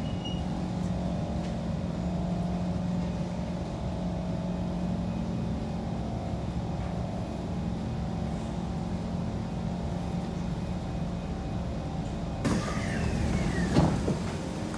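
Interior of a Kawasaki–Kinki Sharyo C151 metro train braking into a station: a steady low drone with a faint whine that falls slowly as the train slows to a stop. Near the end a sudden hiss and clatter as the doors open.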